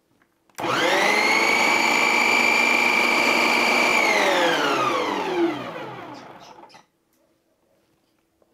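Electric mixer-grinder blending cake batter. The motor starts suddenly with a short rising whine and runs at a steady pitch for about three seconds. It is then switched off and winds down, its pitch falling until it stops.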